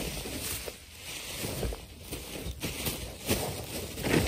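Crinkling and rustling of a plastic shopping bag being handled, with irregular soft knocks and rubbing from the phone being moved around.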